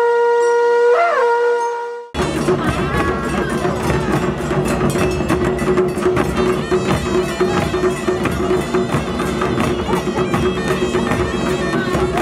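A long horn holds one note, its pitch dipping and coming back about a second in. About two seconds in it cuts to a traditional Himachali band: large barrel drums beaten in a fast, steady rhythm, with brass horns sounding together over them.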